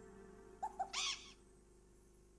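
Two short hoot-like calls, followed by a brief rushing hiss, over a low steady hall hum.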